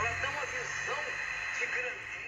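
Sharp solid-state pocket transistor radio playing a spoken talk broadcast through its small speaker, the voice thin and carried on a steady hiss with a low hum underneath.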